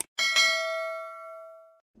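A click sound effect as the cursor hits the notification-bell icon, then a bright bell ding struck twice in quick succession. It rings out and fades for about a second and a half, then cuts off abruptly.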